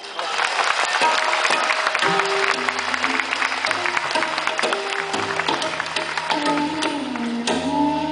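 Audience applause over a live Indian classical performance, with held bamboo-flute notes sounding through it; the applause dies away about seven and a half seconds in, leaving the flute melody clear.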